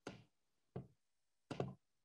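Three brief, faint knocks, evenly spaced about three quarters of a second apart.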